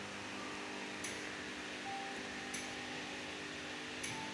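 Steady hum of a kennel room's ventilation fan, with two short, high metallic clinks about a second and a half apart.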